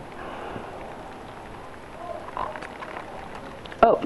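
Steady rain falling in a thunderstorm, an even hiss with a few sharp drop ticks in the second half.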